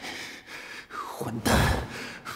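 A man's voice-acted breath, a loud, sharp huff about halfway in, voicing his annoyance just before he grumbles.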